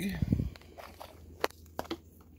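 Gloved fingers dig a leathery python egg out of granular perlite incubation substrate and lift it clear, giving a few short crunchy clicks and rustles. The sharpest click comes about midway and two more come near the end.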